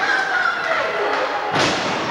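A single heavy thud about one and a half seconds in as a wrestler's body hits the ring mat, with voices shouting around it.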